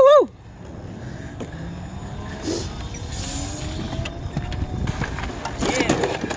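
Electric scooter-style e-bike hub motor with a faint whine that slowly rises in pitch as it gathers speed, under a rushing of wind and tyre noise on wet concrete that grows gradually louder. A short shout opens the sound.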